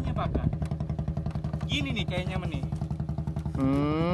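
Boat engine idling with a steady, rapid pulse of about eight beats a second.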